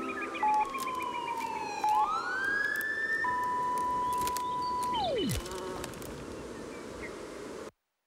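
Electronic synth tones gliding in pitch over a low hiss as a track's outro. A slow falling tone is joined by two short beeps, then a rising sweep. A steady tone follows and drops away sharply about five seconds in. The hiss fades and the audio cuts to silence just before the end.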